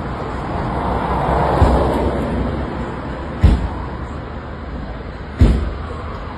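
Steady street traffic noise, swelling as a vehicle passes about a second in. Two loud, sharp bangs come about two seconds apart, near the middle and near the end.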